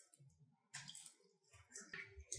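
Near silence, broken by two faint, brief splashes of water poured from a plastic pitcher into a resealable plastic bag, about a second apart.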